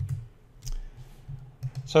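Several short, sharp clicks spread through a pause, with a man's voice starting right at the end.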